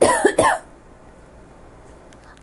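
A woman's short cough, about half a second long, at the very start, followed by quiet room tone.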